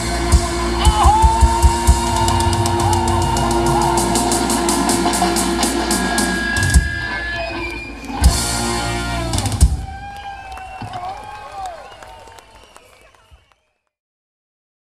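Rock music from a band with drum kit and electric guitars, closing with a few hard accented hits, then the guitars ring out with bending notes and fade to silence near the end.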